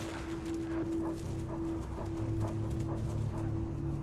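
A TV drama's soundtrack: slow, soft footsteps, about three a second, over a steady low musical drone that swells into a deeper rumble about halfway through.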